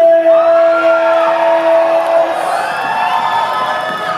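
Audience cheering and whooping. A single drawn-out shout is held steady for about two seconds at the start, then more voices join with rising and falling whoops.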